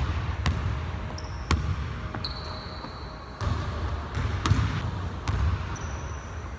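Basketball bouncing on a hardwood gym floor: a handful of sharp, irregular bounces in a large hall, with a few high squeaks between them.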